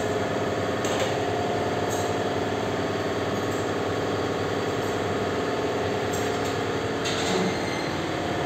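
Steady mechanical drone of running workshop machinery, holding a few even tones, with a couple of faint clicks about a second in and near the end.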